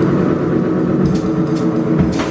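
Free-improvised trio music of keyboard, guitar and electronics with drums: a dense, rumbling low drone of sustained tones, with a few sharp percussion hits about a second in and near the end.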